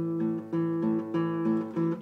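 Classical guitar strummed in a steady rhythm, about three strokes a second, its chords ringing between strokes.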